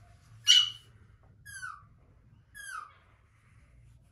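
A bird calling three times: a loud, harsh call about half a second in, then two shorter calls that fall in pitch, about a second apart.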